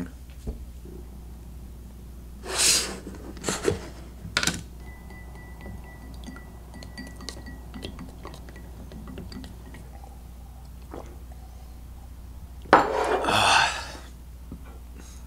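Glassware being handled: a few short rustling bursts and small clinks, then a longer, louder burst of noise near the end.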